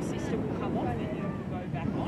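Faint, indistinct voices of players and spectators calling across a football field, over a low, uneven rumble of wind on the microphone.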